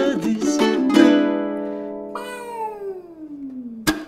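Ukulele strummed, then a chord struck about a second in and left to ring and fade. Over it, a voice slides steadily down in pitch for about two seconds. A sharp strum comes just before the end.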